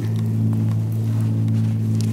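A steady low hum made of several even tones, holding unchanged throughout.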